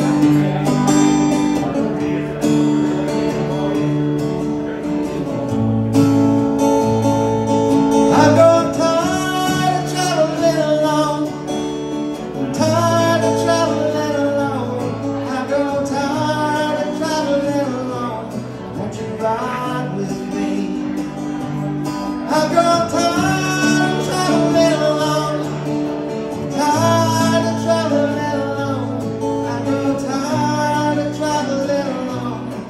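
Acoustic guitar strummed in a steady country rhythm, with a man singing over it from about eight seconds in.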